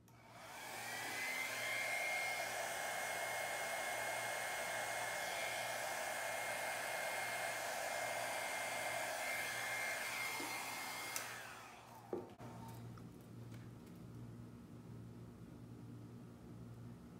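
Hair dryer switched on, its whine rising to a steady pitch within about a second, blowing steadily for about ten seconds, then switched off and winding down, followed by a small click.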